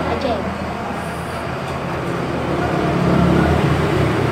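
Busy eatery din: voices talking over a steady low hum.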